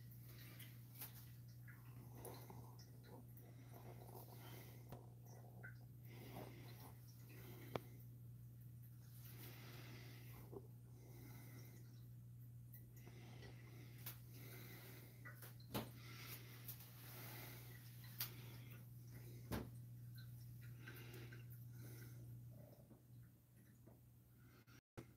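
Near silence: room tone with a faint steady low hum and a few soft ticks; the hum drops away shortly before the end.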